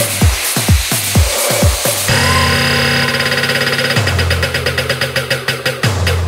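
Electronic dance music in the jungle terror / Dutch house style. A steady kick drum beats about three times a second, then drops out about two seconds in. A thick sustained synth bass chord, rapidly chopped into a stutter, takes over and changes note about two seconds later.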